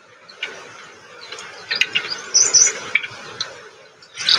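Outdoor sound with rustling and sharp clicks, and a few high bird chirps about halfway through.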